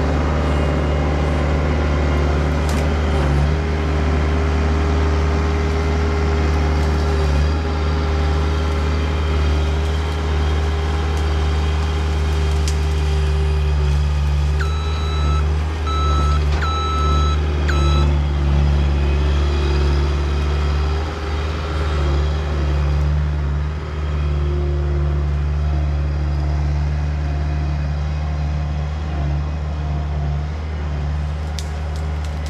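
Bobcat S185 skid-steer loader's diesel engine running steadily while the machine works and drives off. About halfway through, its backup alarm beeps about four times.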